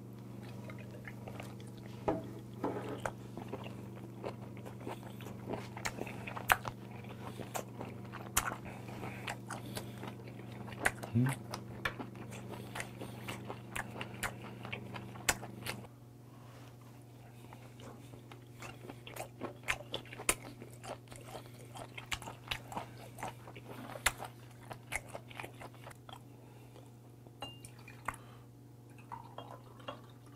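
Close-up chewing and biting of boiled white whelk meat, with many short wet mouth clicks and smacks. A low steady hum runs underneath and stops about halfway through.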